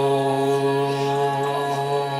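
Devotional chanting held on one long steady note over a drone, the opening of a welcome song.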